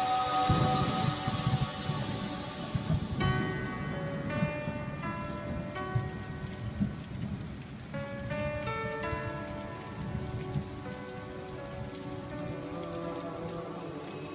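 Rain-and-thunder ambience laid into a lofi track, with a low rumbling that is strongest in the first few seconds. Soft sustained keyboard chords come in about three seconds in and carry on over the rain.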